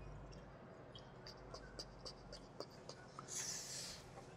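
Faint handling sounds: a scatter of small clicks and scratches, then a short hiss near the end.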